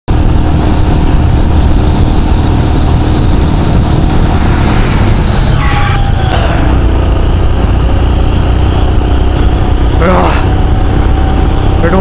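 Royal Enfield Himalayan single-cylinder engine running at highway speed, about 100 km/h, with heavy wind rush over the handlebar-mounted camera.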